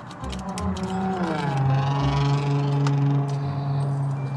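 A deep, droning edited-in sound effect: one long low note that slides down in pitch about a second and a half in, then holds steady.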